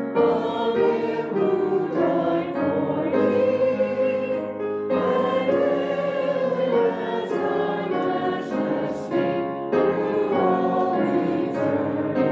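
A small church choir and worship leaders singing a hymn together, sung in phrases with brief breaks between them.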